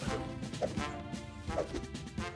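Cartoon background music holding a steady chord, with a few light hits and effects as the pups hop into line.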